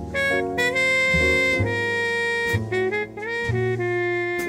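Slow jazz ballad played by a 1960s hard-bop sextet: a horn holds long melody notes over double bass, piano and drums.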